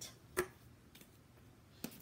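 Quiet room with a single sharp click near the end: handling noise as objects are reached for and picked up.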